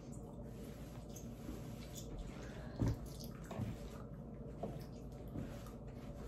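Faint chewing of a soft, sticky banana chew candy: a few small wet clicks from the mouth over a low, steady room hum.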